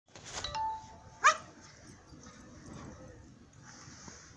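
A Pomeranian puppy gives one short, sharp yelp about a second in, falling in pitch; it is the loudest sound, and a brief high steady tone comes just before it.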